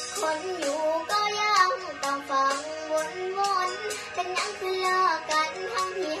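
A young girl singing a Thai song over a backing track, holding long, wavering notes, with the track's beat running beneath.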